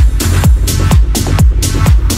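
Techno track from a DJ mix: a steady four-on-the-floor kick drum, about two beats a second, with off-beat hi-hats between the kicks.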